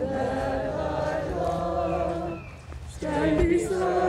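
A choir singing a hymn in sustained, held notes, with a short break a little past two and a half seconds in before the next phrase starts.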